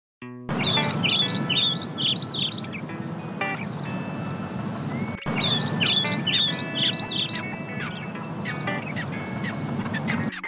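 Birds chirping and singing over a steady low background, coming in about half a second in. After a brief cut about halfway through, the same stretch of birdsong starts over again.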